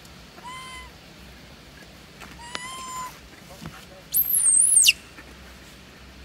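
Long-tailed macaques calling: two short, clear coos about half a second long, then a louder, very high-pitched squeal lasting under a second that drops in pitch at its end.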